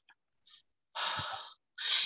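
A woman's audible intake of breath, about half a second long, about a second in, taken in a pause between phrases.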